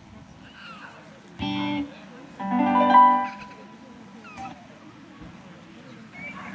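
Two short held chords on an electric stage keyboard, the second one louder; each stops abruptly. Faint voices in the background.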